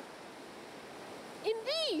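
Surf breaking on a sandy beach, a steady wash of noise, before a woman's voice comes in near the end.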